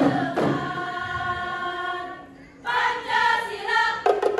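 Women's chorus singing a qasidah, an Islamic devotional song, together with little or no drumming. A long held note gives way to a brief lull a little past the middle, then the voices come back in on higher notes.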